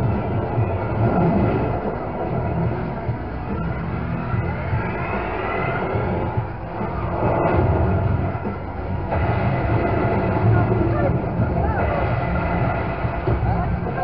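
Funfair ambience: a steady, loud din of machine rumble, music and voices, with a few rising whistle-like tones a few seconds in.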